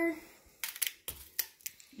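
Hand pruners snipping through a sunflower stem: several short, sharp clicks over about a second.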